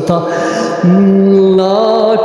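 A man's voice holding one long, steady sung note, starting about a second in, at the opening of a Hindi film song.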